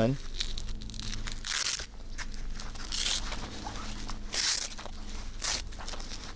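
The hook-and-loop strap of a Rhino Rescue windlass tourniquet is pulled tight around a forearm and pressed down, in four short bursts of fabric rasping.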